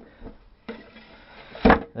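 A wooden column frame slides down over PVC pipe uprights with a faint scrape, then knocks once onto the lower wooden section near the end as it seats into place.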